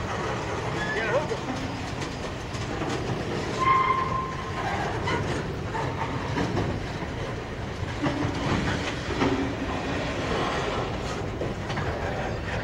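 Freight cars rolling past close by: steady wheel-on-rail rumble with clicks as the wheels cross rail joints, and a few brief metallic squeals, the clearest about four seconds in.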